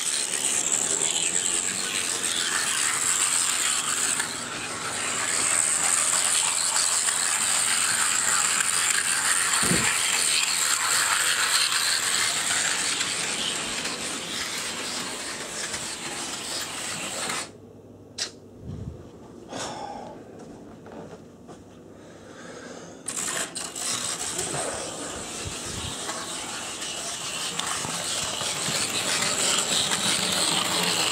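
HO-scale brass 4-8-4 model steam locomotive running along the track, its motor and gear train giving a steady grinding, ratcheting whir. The noise drops away sharply for about five seconds past the middle, then comes back at full strength.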